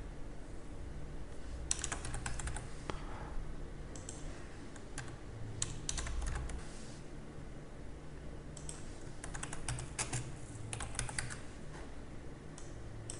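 Typing on a computer keyboard: short runs of keystroke clicks separated by pauses, over a faint low hum.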